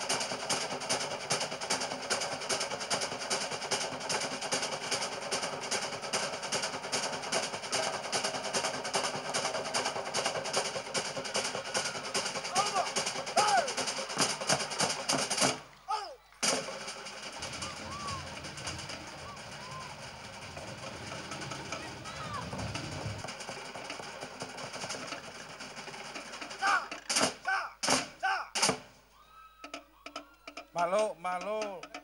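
Rapid, steady drumming, the accompaniment to a Samoan fire knife dance, stops suddenly about halfway through. Faint voices follow, then a few loud separate drum strikes near the end.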